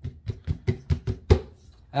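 Fingers tapping about eight times on the top of a Doss Soundbox H200 Bluetooth speaker, around its exposed woofer cone. The taps come in a quick, uneven run and stop about a second and a half in.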